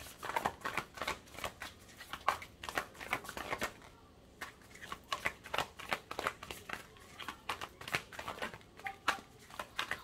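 Tarot cards shuffled by hand, overhand style: a rapid, irregular run of card flicks and slaps, with a brief lull about four seconds in.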